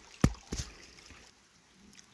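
Two knocks a third of a second apart, the first the louder, from a hand handling the camera phone. Then only a faint hush.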